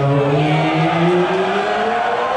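Distorted, amplified electric guitars holding a droning note that slowly rises in pitch over a steady lower note, before the drums come in.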